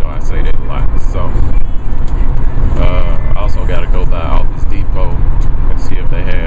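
Steady low road and engine rumble inside a moving car's cabin, with a voice talking at times over it.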